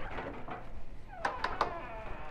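A shop's side door being opened, with a few sharp clicks about a second and a half in.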